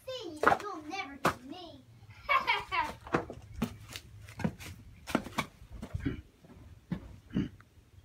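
A child's wordless voice, wavering up and down in pitch, for about the first three seconds. Then a run of sharp knocks, about one or two a second, until near the end.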